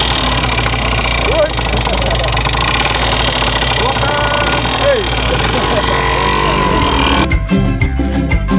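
A vehicle engine idling with a steady low hum, with voices over it. Music cuts in about seven seconds in.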